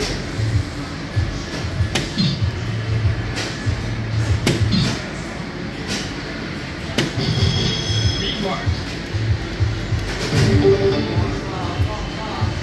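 DARTSLIVE3 electronic soft-tip dart machine during play. Several sharp knocks come from darts striking the board, and a short electronic effect tone sounds about seven seconds in. Music with a steady bass beat plays throughout.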